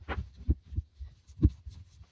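Dull low thumps and rubbing as the end of a wooden axe handle is rubbed hard by hand to burnish it, the handle knocking on a plywood workbench. The two loudest thumps come about half a second and a second and a half in.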